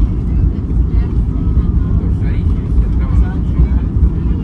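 Airbus A320 cabin noise as the airliner rolls along the runway: a steady low rumble of the engines and wheels heard from inside the cabin.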